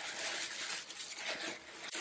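Polka-dot tissue wrapping paper rustling and crinkling as a wrapped package is handled and lifted out of a box.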